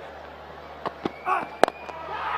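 Cricket bat striking the ball with a sharp crack, the loudest of a few short knocks, a little past the middle.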